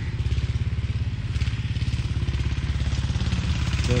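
Diesel engine of a Başak tractor running steadily with a fast, even beat.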